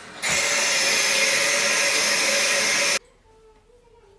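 Bathtub faucet running hard, a loud steady rush of water that starts suddenly and cuts off abruptly about three seconds in.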